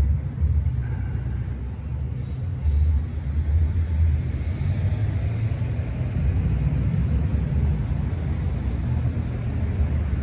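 Low, steady outdoor rumble with no speech, slightly rising and falling in strength.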